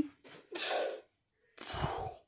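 Two short, breathy puffs of air from a person close to the microphone, one about half a second in and one near the end, the second with a low rumble as of breath hitting the mic.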